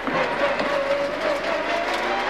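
Mitsubishi Lancer N4 rally car's turbocharged four-cylinder engine heard from inside the cockpit, pulling hard at high revs with a steady drone that climbs slightly in pitch.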